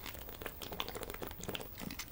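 A person drinking quickly from an aluminium drinks can: a run of small, irregular gulps and clicks.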